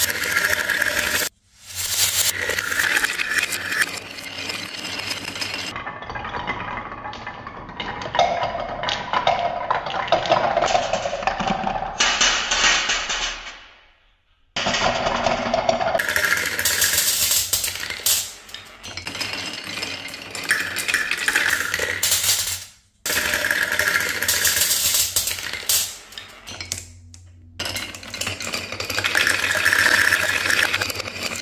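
Many glass marbles rolling and clattering down a wooden wave-slope marble run: a dense stream of clicks and clinks as they knock along the wooden ledges and drop onto other marbles in a metal tin. It cuts off abruptly and restarts several times.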